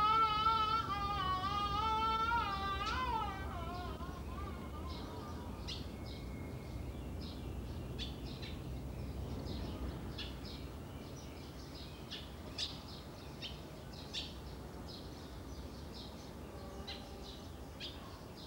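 A Beijing opera singer's high, wavering voice holding a sung line, fading out after about three seconds. Then birds chirping in short, scattered calls.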